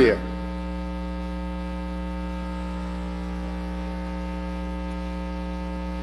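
Steady electrical mains hum on the audio feed: a constant low buzz with many overtones, holding at one level throughout.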